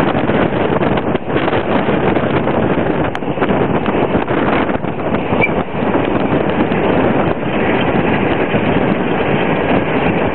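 Wind buffeting the microphone at the open window of a moving vehicle, mixed with the vehicle's road and engine noise: a loud, rushing rumble that rises and falls without letting up.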